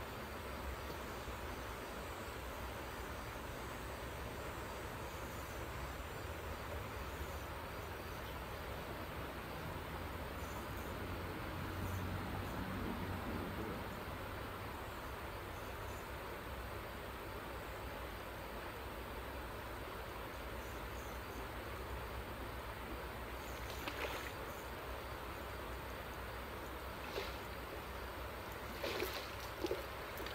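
River water flowing steadily, with a few short clicks or knocks near the end.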